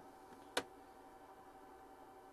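A single sharp click about half a second in, a push button on the panel being pressed, over faint room tone with a faint steady whine.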